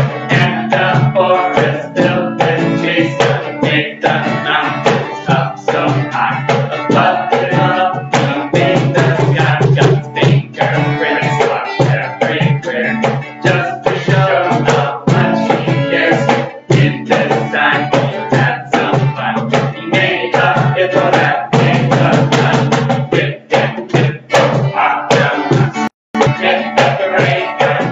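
Acoustic guitar strummed in a steady rhythm with a cajón (box drum) beating along, accompanying an upbeat camp song.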